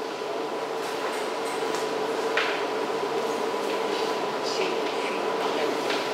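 Whiteboard marker strokes, a few short faint scratches as lines are drawn, over a steady room hum and hiss.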